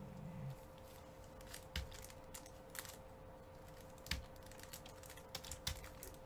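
A handful of light, sharp clicks and taps, about six spread unevenly over several seconds, over a faint steady electrical hum.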